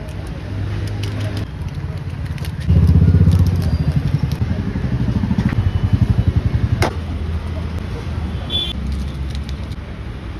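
Low, pulsing rumble of an engine running close by, loudest from about three to seven seconds in, with one sharp click near seven seconds.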